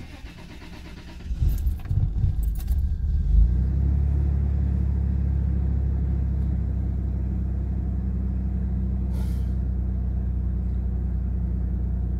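2001 Toyota Tacoma engine started with the key. Keys jangle, the starter cranks for about two seconds, the engine catches and settles into a steady fast idle without stumbling. This is its first start after a fuel filter change, with the fuel system depressurized beforehand.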